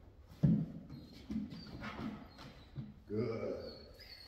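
A German Shepherd jumping up onto a raised training platform: a thump about half a second in, followed by lighter knocks of its paws and claws.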